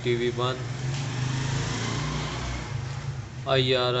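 Television sound playing behind the satellite channel list: a rushing noise over a steady low hum, loudest between about one and three seconds in.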